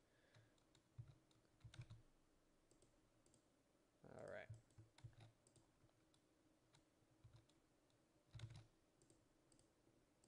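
Near silence with a few faint, scattered clicks of a computer mouse.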